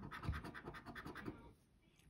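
A coin scraping the coating off a paper scratch-off lottery ticket in quick, rapid back-and-forth strokes. The scraping is faint and stops about one and a half seconds in.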